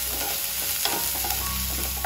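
Chopped onions sizzling as they fry in a nonstick pan, stirred with a wooden spatula, a steady hiss.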